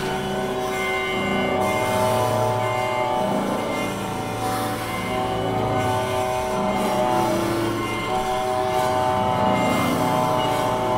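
Contemporary chamber ensemble sustaining a dense, dissonant cluster of many held tones, a thick steady chord that shifts slightly a few times.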